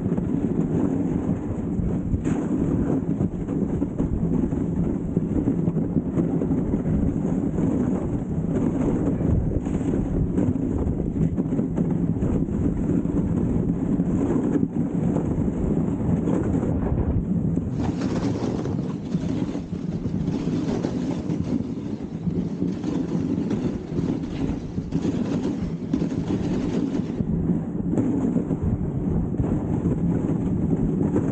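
Dog sled running over a packed snow trail: a steady low rumble from the runners and the moving sled, with a brighter hiss for several seconds past the middle.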